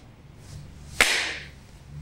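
A sharp puff of breath blown by a man onto his raised hand, once about a second in, fading quickly.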